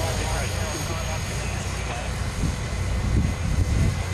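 Hornet micro unmanned helicopter hovering some distance off, a steady low rotor hum, with a short laugh at the start.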